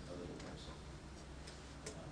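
Quiet room noise with a steady low hum, faint voices at the start and a few light clicks, the sharpest just before the end.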